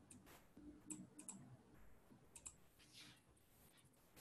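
Near silence with a few faint, scattered clicks of a computer keyboard and mouse as text is edited.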